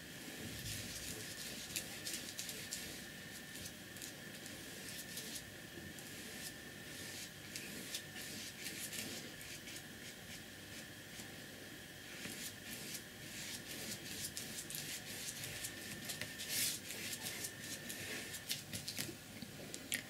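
Faint scratching of a large flat brush's bristles dragged across paper in repeated back-and-forth strokes, laying down and blending acrylic paint.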